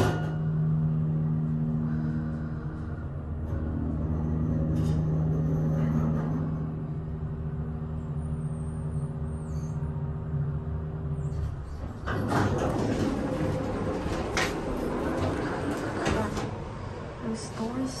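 Schindler hydraulic elevator's pump motor running with a steady low hum as the glass car rises, cutting off about eleven seconds in as the car stops. The car doors then slide open and a louder, busier background with scattered clicks comes in.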